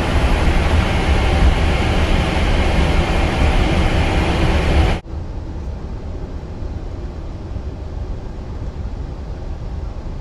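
Steady cabin noise in a Boeing 777-300ER cockpit while taxiing: a low rumble under a constant airy hiss. About halfway it drops suddenly to a quieter, duller version of the same noise.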